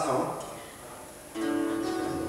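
A voice trails off, then after a short lull a guitar chord is struck about one and a half seconds in and left ringing steadily.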